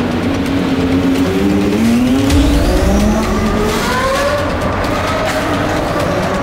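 Supercar engine accelerating hard, its pitch climbing again and again as it pulls up through the gears, in a road tunnel.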